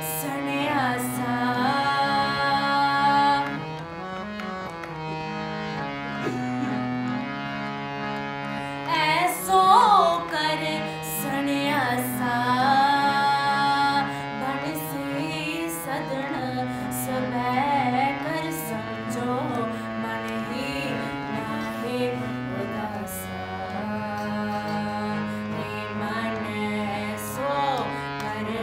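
A woman singing a Sikh kirtan shabad to her own harmonium: held harmonium chords and a drone under a slow, ornamented vocal line that bends and glides between notes.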